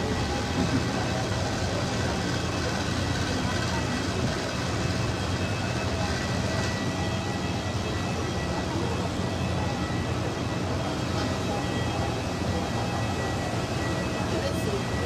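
A parked jet airliner running: a steady low drone with a constant high-pitched whine. Voices murmur underneath.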